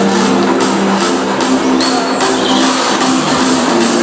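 Hardstyle dance music played loud over a club sound system. A held, stepping synth melody runs over steady high percussion, with little deep bass coming through.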